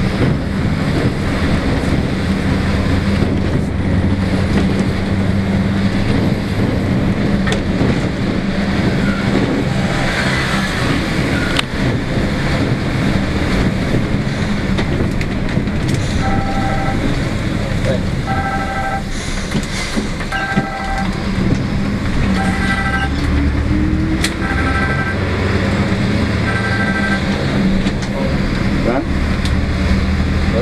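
Mercedes-Benz O-500M bus engine running steadily at low road speed, heard from inside the cabin at the front. From about halfway through, a short electronic beep sounds about every two seconds, six times.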